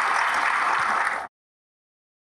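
Audience applauding in a hall, cut off abruptly about a second and a half in, leaving silence.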